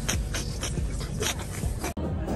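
Breathy, wheezing laughter in short pulses about four a second.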